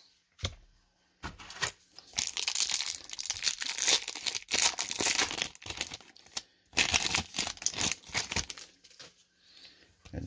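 A 1994 Topps baseball card pack's foil-lined wrapper being torn open and pulled off the cards by hand, crinkling and crackling in an irregular run of sharp rustles, with a short pause about six seconds in.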